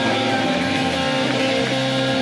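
Live rock band with amplified electric guitars and bass holding sustained, distorted chords, with few drum hits.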